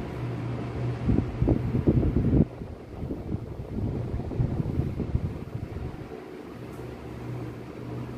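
A steady low mechanical hum, with a loud patch of irregular wind-like rumbling on the microphone from about a second in, lasting about a second and a half.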